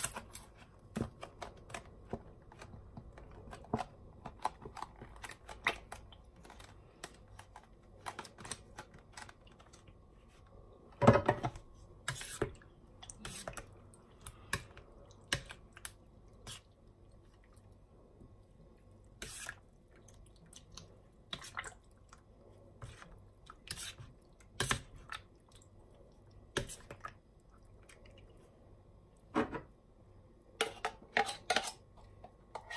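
A metal spoon mixes thick cream through jelly cubes and coconut strips in a plastic bowl, making irregular small clicks and taps against the bowl. The loudest knock comes about eleven seconds in.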